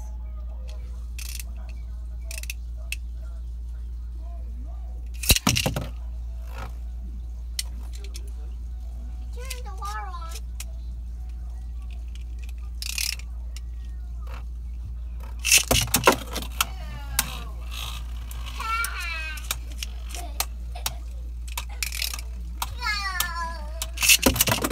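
Beyblade spinning tops launched into a plastic stadium: a sharp clack about five seconds in, then a burst of clacks and rattles about two-thirds of the way through as the tops strike the stadium walls and each other. Children's voices come in between, over a steady low hum.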